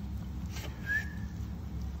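Hands folding a flatbread wrap on a plate, a soft brief rustle about half a second in, over a steady low kitchen hum. Just under a second in comes one short, thin, high whistle-like tone.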